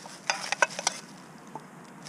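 Light clinks and rattles of a compact camping mess kit's small pans being handled and set down, a quick cluster of knocks in the first second, then quieter handling.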